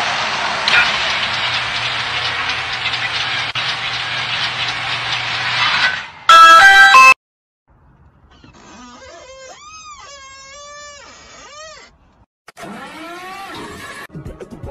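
A steady whirring hiss for about six seconds, then a sudden, very loud, distorted blast with a strong pitch, about a second long. After a short silence, a man's voice wails in long tones that rise and fall, and again near the end.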